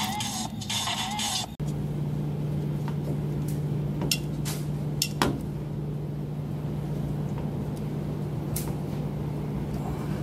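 Background music cuts off about a second and a half in, giving way to a steady low mechanical hum with a few sharp clicks and taps of handling, most of them around the middle.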